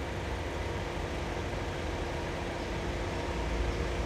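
A car engine idling: a steady low rumble with a faint even hum that does not change.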